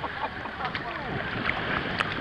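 Shallow sea water sloshing and lapping around the swimmers as a steady noisy wash, with wind on the microphone.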